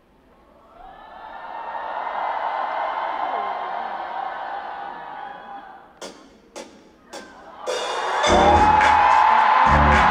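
A concert crowd screams and cheers in the dark, swelling over a couple of seconds and then fading. Three sharp musical hits follow about half a second apart, and then loud pop music with heavy bass starts over the PA, with the crowd screaming over it.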